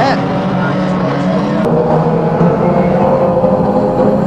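Engines of a pack of banger racing cars running together, a steady drone whose pitch wavers slowly as the cars accelerate and slow.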